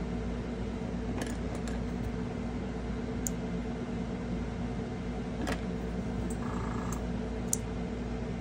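A steady low background hum, with a few small, sharp metallic clicks scattered through it as spring-loaded alligator clips are opened and snapped onto small plastic model parts.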